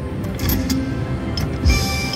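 Video slot machine's spin music and sound effects, with scattered short clicks. Near the end a thump and a held chime tone come in as multipliers land on the reels.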